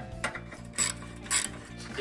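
Ratchet wrench clicking as a worm drive clamp on an exhaust heat shield is loosened, with two louder rasping strokes about a second in and half a second apart.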